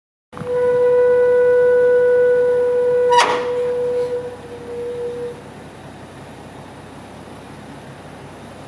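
Liftgate hydraulic pump motor running with a loud, steady single-pitched whine for about three seconds, then shutting off with a sharp click as its contactor releases.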